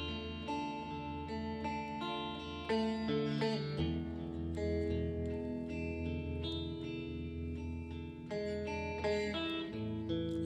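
Instrumental passage of a rock song: a guitar playing a line of single notes over a sustained low bass.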